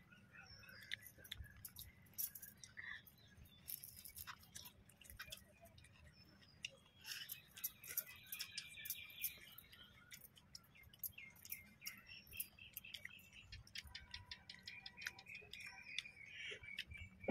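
Quiet, scattered clicks and soft rustles of hands mixing rice on a banana leaf and of people eating with their fingers.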